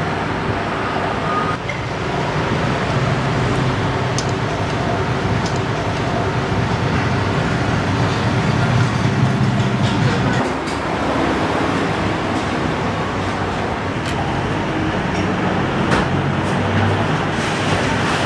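Steady low rumble of traffic and busy street-side eatery noise, with a few faint clinks of spoons and chopsticks against bowls.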